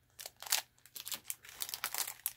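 Small clear plastic bags of craft beads and charms crinkling as they are handled, in quick irregular crackles that start just after the beginning.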